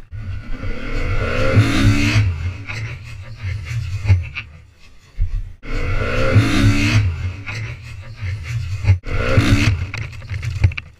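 Motorbike engine revving in three loud bursts, each rising and falling in pitch, over a heavy low rumble.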